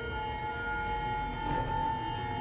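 Tense background film score: several long, steady high notes held together like a drone, one swelling about halfway through.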